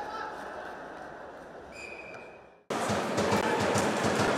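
Ice rink arena noise fading out, with a short steady high tone just before it dies away. About two and a half seconds in it cuts abruptly to loud rink noise of live play: crowd and players scuffling along the boards.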